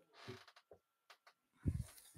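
A quiet pause with a few faint clicks, then a short low thump near the end.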